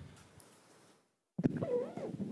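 Faint room tone cuts to dead silence for about a third of a second as the chamber's microphone feed switches over. A short voice-like sound with a gliding pitch follows as the next microphone opens.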